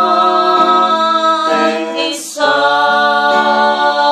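Several unaccompanied voices singing long held notes in harmony. About halfway through the chord breaks off with a brief hiss, then the voices come back in on a new chord.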